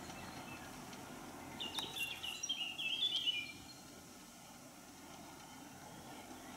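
A songbird in the trees below sings a short phrase of quick, high chirping notes about one and a half seconds in, lasting about two seconds, over steady faint outdoor background noise.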